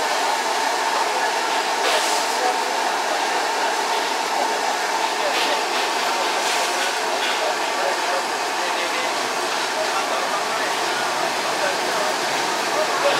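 Steady whooshing hum of a street food stall at work, with a faint steady tone in it and a few light clinks of bowls and utensils.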